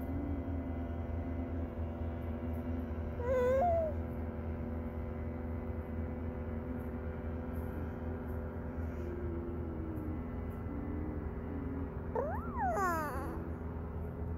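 A small child's short babbling squeals, once about three seconds in and again in a quick cluster near the end, over a steady engine drone.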